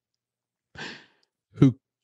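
A man's short, soft breath drawn in about a second in, during a pause in his speech, followed by a single spoken word.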